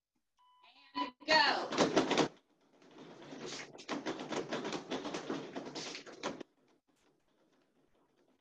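A short electronic beep sounds near the start, then a spoken "Go". It is followed by about three and a half seconds of dense, noisy rustling full of quick clicks, which stops suddenly about six seconds in.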